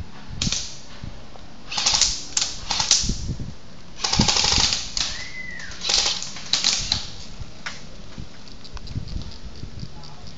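Airsoft gunfire: several short rapid-fire volleys of sharp clicks with pauses between them, the longest lasting under a second about four seconds in. A brief arching whistle-like tone sounds about five seconds in.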